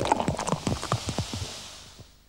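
Beer glugging as it pours out of a bottle: a quick run of knocks over a fizzing hiss of foam that fades away near the end.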